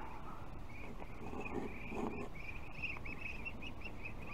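Faint birds chirping: a continuous run of short, quick, high peeps, with some soft rustling about halfway through.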